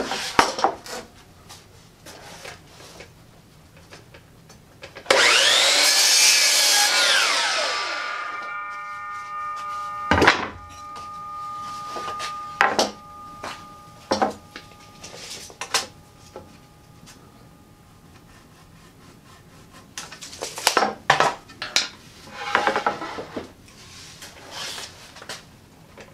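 A DeWalt sliding compound miter saw starts up and makes one crosscut through a 1x6 board about five seconds in, lasting some three seconds. Its blade then coasts down with a whine that fades over several seconds. Wooden knocks and clatter of boards being handled come before and after the cut.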